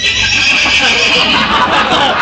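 A loud, high, quavering horse whinny in a break in the band's music, sliding down in pitch near the end.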